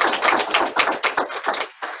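Audience applauding: many quick, overlapping claps that thin out and fade away in the second half.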